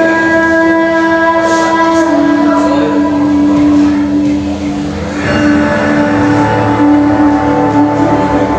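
Recorded dance accompaniment music made of long, steady held notes. The main note steps down slightly about two seconds in, and the music dips briefly around five seconds before going on.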